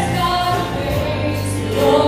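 Worship team singing a gospel praise song in unison with several voices, women's voices leading, held notes over a steady instrumental backing with bass.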